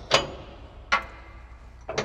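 Three sharp metal clicks about a second apart as the adjustment pins are worked out of a disc header's skid shoe bracket, the first the loudest.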